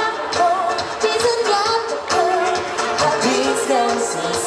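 Live pop band playing an Indonesian pop song: sung lead vocals with vibrato over electric guitars, keyboard and drums, amplified through a stage PA.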